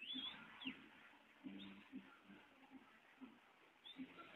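Faint bird calls: a few short, quickly rising chirps, clustered in the first second and again near the end, over soft low notes that repeat throughout.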